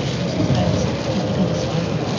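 Steady noise inside a car driving on a wet highway: tyres hissing on the wet road surface.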